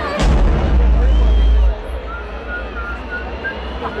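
Live concert sound system playing a deep, booming bass hit that opens sharply about a quarter-second in, holds for about a second and a half and then cuts away, as the band's opening song starts. A festival crowd cheers and whistles throughout.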